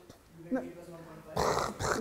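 A man's short, rough, raspy groan about one and a half seconds in, a mock-exasperated exclamation at a hard question.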